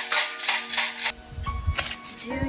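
Numbered fortune sticks rattling inside a hexagonal omikuji box as it is shaken upside down, a quick run of clicks for about a second. This is followed by a few low bumps as the box is handled.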